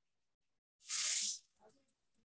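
A short, loud burst of hissing noise about a second in, lasting about half a second, followed by a few faint clicks.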